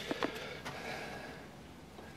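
A few faint light clicks of camera handling, then quiet room noise.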